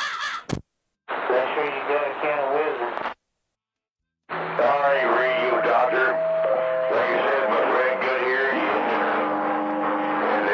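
CB radio transmissions heard through a receiver: a brief click, about two seconds of garbled talk, a second of dead air, then more talk over steady held tones that change pitch in steps.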